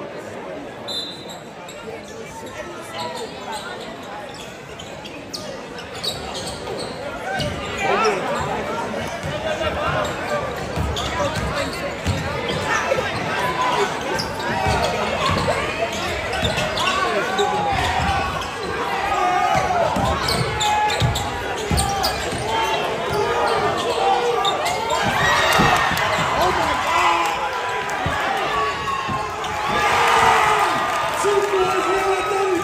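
Basketball bouncing on a hardwood gym floor amid crowd chatter and shouts in a large gym. The voices get louder after about eight seconds.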